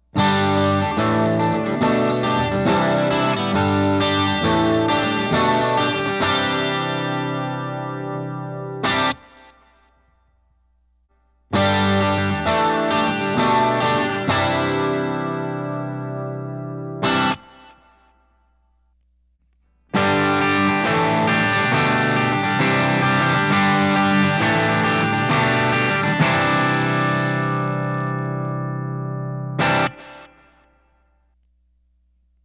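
Electric guitar, a James Tyler Variax JTV-59, played through Line 6 Helix clean amp presets that pair a Roland JC-120 model with Tweed and Deluxe amp models, with a bit of bite and breakup. Three passages of picked chords, each ending on an accented chord and then cut off, with short silent pauses between.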